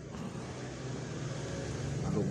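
Steady low background hum with a faint even noise, slowly growing louder.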